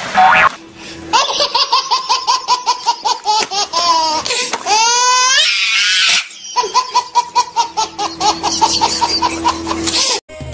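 A short splash of water at the start, then a baby laughing hard in rapid, fast-repeating bursts, with a high squeal of laughter that rises and falls in the middle.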